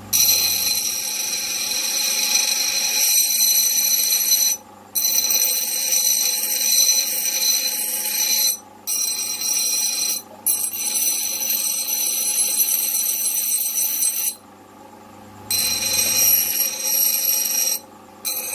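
Two-wheel bench grinder grinding a flat metal piece held against a running wheel: a loud, shrill, ringing screech. It drops out a few times, once for about a second, when the piece is lifted off, leaving the motor's low hum.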